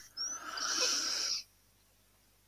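A breathy hiss, like a person breathing out close to a microphone, lasting about a second and a half and cutting off suddenly.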